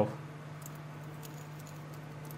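Faint, scattered light clicks and clinks of a three-tone metal link watch bracelet being handled and turned in the fingers, over a steady low hum.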